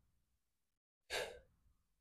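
Near silence, broken a little over a second in by one short breath out, a sigh.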